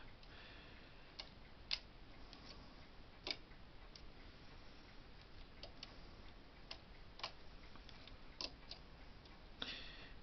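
Faint, irregular small clicks, about a dozen, from the metal latch needles of a Bond knitting machine as yarn is wound by hand round each needle, the latches flicking shut as it goes.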